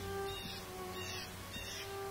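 Background music of slow bowed strings, a violin holding long notes, with a few short high notes repeating about every two-thirds of a second.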